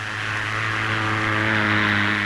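Small propeller-driven light aircraft's engine running with a steady, even drone as the machine moves across the ground, growing slightly louder.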